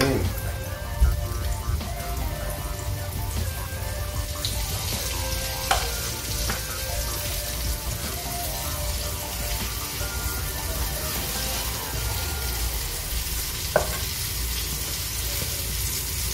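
Pieces of barracuda frying in oil in a pan, a steady sizzle, with a sharp knock about six seconds in and another near the end.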